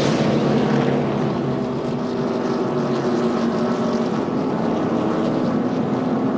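NASCAR Sprint Cup stock cars' V8 engines running at racing speed as several cars pass in a pack, a loud, steady drone with an even pitch.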